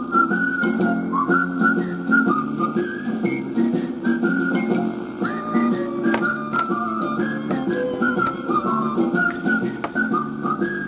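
Music played back from an old reel-to-reel tape: a high, whistle-like melody that moves from note to note over steady low organ-like chords.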